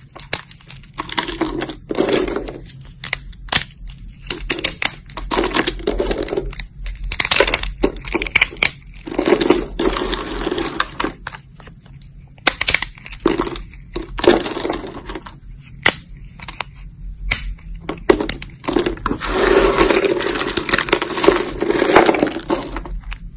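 Thin plates of soap snapped and crushed between the fingers: an irregular run of sharp cracks and snaps, with spells of crunchy crumbling in between.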